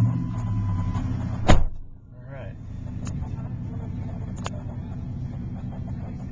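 2004 Ford F-150's V8 engine, just started, idling steadily as heard from inside the cab. A steady tone sounds for about the first second, and a single loud thump comes about a second and a half in.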